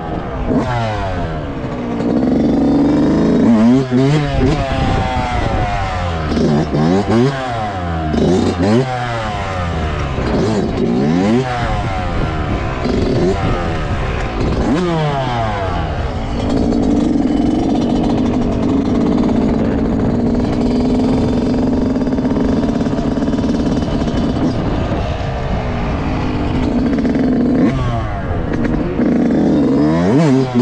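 Yamaha YZ125 two-stroke dirt bike engine revving up and falling back again and again as it accelerates and shifts. Past the middle it holds steady revs for several seconds, then rises and falls again near the end.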